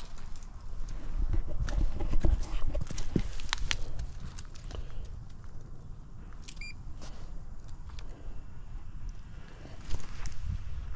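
Footsteps and handling knocks on concrete strewn with dry leaves over the first few seconds, then a short electronic beep from a digital refrigerant manifold as a button on it is pressed, about six and a half seconds in. The vacuum pump is silent: it has stopped running.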